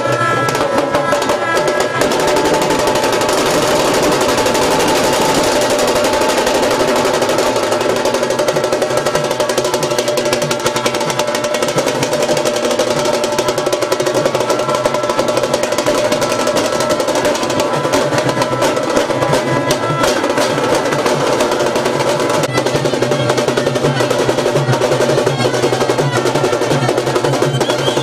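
Street procession band playing: waist-slung drums beat a fast, rolling rhythm under sustained notes from brass horns.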